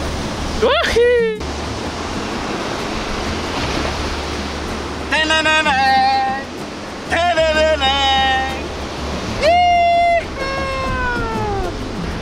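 Ocean surf and wind on the microphone as a steady rush with a low rumble. Over it come several short pitched sounds: a rising one about a second in, then a run of held and falling ones in the second half.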